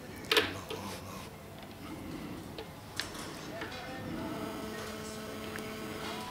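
A sharp click or knock about a third of a second in and a smaller one about three seconds in, over low room sound. Faint held musical tones come in during the second half.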